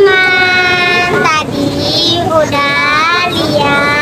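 Children's voices singing or calling out together in unison, in several long drawn-out notes that slide in pitch.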